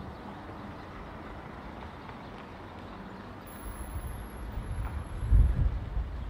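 Outdoor street ambience: a steady low background noise, with an irregular low rumble building in gusts over the last two seconds.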